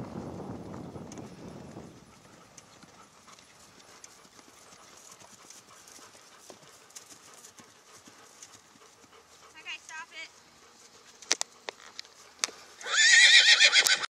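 A horse whinnying: a short, quieter whinny about ten seconds in, then a loud, quavering whinny near the end. A few sharp knocks come just before it, and wind buffets the microphone at the start.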